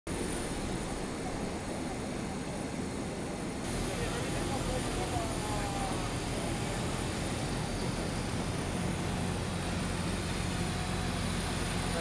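Steady low engine hum of an airport apron, with a thin high whine over it and faint voices from about four seconds in.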